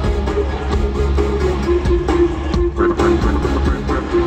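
Loud live pop concert music played through an arena sound system, with heavy bass and a long held note in the middle.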